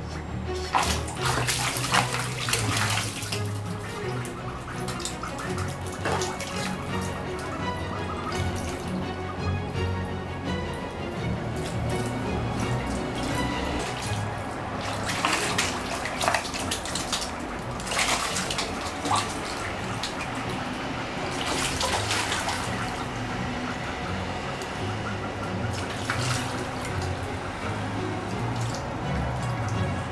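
Water splashing in shallow plastic basins as young spot-billed ducks dive and bathe, coming in bursts every few seconds, over steady background music.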